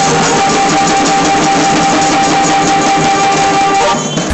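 Dhol-tasha band playing live: fast, dense tasha drumming over dhol beats, loud and unbroken, with a held high note running through it that stops near the end.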